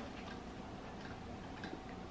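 Faint sipping through plastic straws, with a few soft small clicks over quiet room tone.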